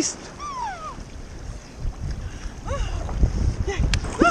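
Sea water sloshing and lapping against a waterproof camera held at the surface beside a swimmer, with wind buffeting the microphone. A few short vocal sounds break through, a falling whoop about half a second in.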